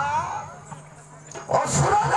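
A voice singing or declaiming through a stage PA with a wavering pitch, trailing off into a short lull where a steady low hum of the sound system remains. About a second and a half in, the voice comes back with regular drumbeats.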